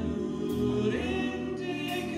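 A small vocal group singing in harmony, backed by a jazz big band with bass notes underneath.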